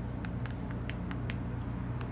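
Buttons on a handheld power-shade remote clicking as they are pressed, about five separate clicks spaced unevenly, over a steady low hum.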